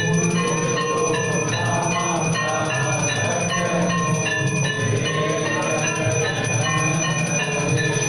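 Temple bells ringing without pause during the aarti, many strikes at several different pitches overlapping, over a steady low rumble.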